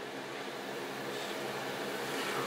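Steady, even hiss of kitchen noise at a hob where meat is cooking in a pot, slowly getting a little louder.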